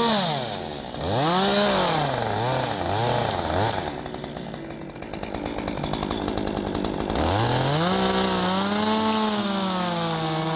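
Small two-stroke chainsaw being revved in short bursts, dropping back to a lower speed for a few seconds, then run up again at about seven seconds and held at high revs, its pitch wavering slightly under load as it prunes a branch from a tree trunk.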